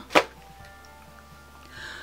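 A single sharp knock just after the start, over faint steady background music.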